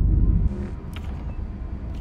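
Deep rumble of a film sound effect, strongest in the first half second, easing into a low hum with a brief hiss about half a second in.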